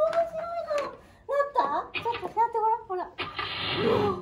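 Yamaha Electone Stagea electronic organ set to a comical voice-like sound, played as a sliding tone and then a run of short notes, ending in a longer, noisier note.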